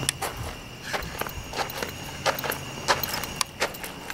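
Footsteps of a person skipping in across pavement: a series of light, irregularly spaced steps over a faint steady hum.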